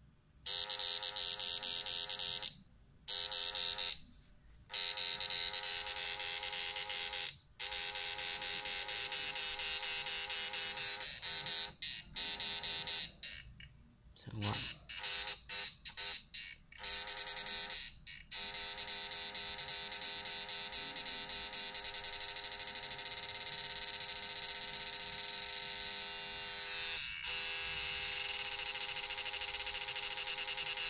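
Homemade push-pull inverter and its transformer whining with a steady high electronic tone, its output chopped into pulses by a multivibrator circuit. The whine cuts out and comes back about half a dozen times in the first part, then runs unbroken.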